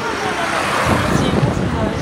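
A motorcycle going by close at hand, its engine noise swelling through the middle and easing off again.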